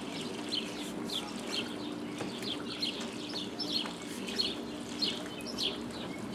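A small bird chirping repeatedly, short high chirps about two or three a second, over a steady low hum.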